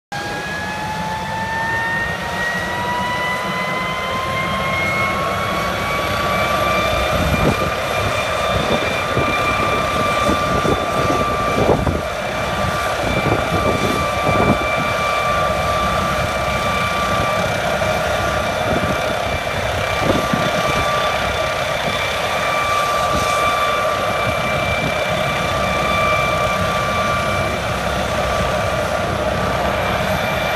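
Air ambulance helicopter running on the ground, its turbine whine rising in pitch over the first seven seconds as it spools up, then holding steady with the rotor turning.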